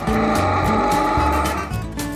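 Strummed acoustic-guitar background music, with a vehicle sound effect laid over it that fades away near the end.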